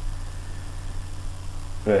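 Steady low hum with a light hiss on the recording during a pause in speech, ending in a single spoken word.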